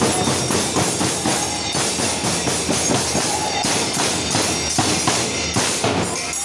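Large brass hand cymbals (kartal) clashing together in a fast, steady rhythm, with drum beats underneath, in a Manipuri Holi dance.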